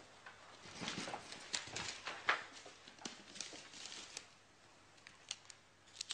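Scattered rustles and light knocks, as of things being handled, loudest in the first half with one sharp click about two seconds in, then a few faint clicks near the end.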